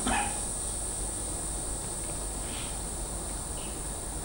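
Steady high-pitched insect chirring over a low background hum, with two faint short sounds in the second half.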